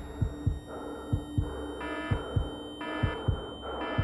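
Heartbeat sound effect in a sci-fi performance soundtrack: double low thumps, lub-dub, a little under once a second, over a steady low drone and a thin high tone. From about two seconds in, a short alarm-like beep comes about once a second between the beats.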